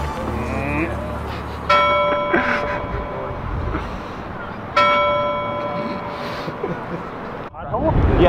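A large bell struck twice, about three seconds apart, each strike ringing out and slowly fading, over city background noise.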